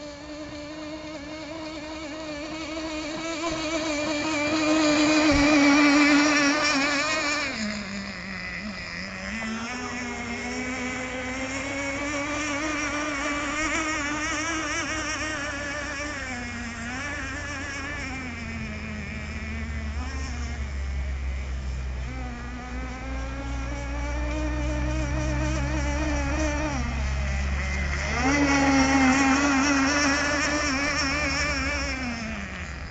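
Radio-controlled speedboat's 3.5 cc nitro engine running at high revs, a buzzing whine whose pitch drops sharply about 8 s in and again near the end as the throttle comes off, then climbs back. It is loudest about 6 s in as the boat passes close, and a low rumble comes in during the second half.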